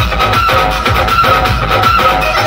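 Electronic dance remix played loud through a large DJ sound system, with a heavy bass beat.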